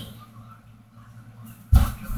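A quiet stretch, then a single dull thud about three-quarters of the way in that dies away quickly.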